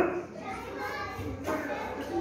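Young children's voices chattering quietly among themselves in a room, with no single loud speaker.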